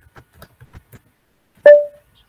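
Computer keyboard keys clicking in quick short strokes as a command is typed, then, about a second and a half in, a single loud electronic ping that rings briefly and fades.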